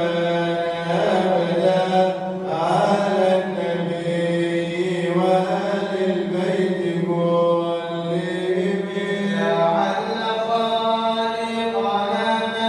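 Men chanting Arabic Sufi praise poetry (madih) into a microphone, with no instruments, in long, slowly ornamented held notes. A new, higher phrase begins near the end.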